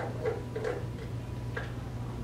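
Classroom room tone: a steady low hum with a few faint, irregularly spaced clicks and taps, most of them in the first second and one more about a second and a half in.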